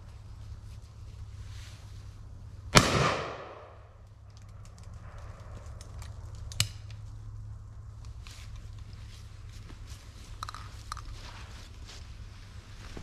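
A single shotgun shot at a passing wood pigeon about three seconds in, loud and sharp with a short echo dying away over about half a second. A smaller sharp click follows about four seconds later.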